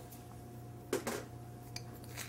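Steady low hum of commercial kitchen equipment, with a faint light click near the end.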